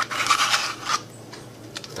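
Greek yogurt being scraped out of a small plastic pot: a run of rasping scrapes through the first second, then quieter.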